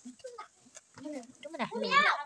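Voices talking off to the side in short snatches, with a louder high-pitched wavering call near the end.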